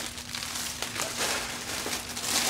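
Rolls of crepe paper rustling and crinkling as they are gathered up by hand and lifted off the table.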